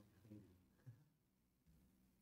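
Near silence: room tone with a few faint, brief low sounds.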